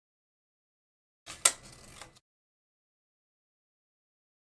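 Scissors cutting paper: one sharp snip with a brief papery rustle around it, about a second and a half in.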